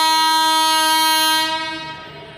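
Electric locomotive's horn: one steady, loud blast lasting about a second and a half, then trailing off.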